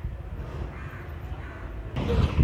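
A bird calling a few times, faint, over a steady low background rumble.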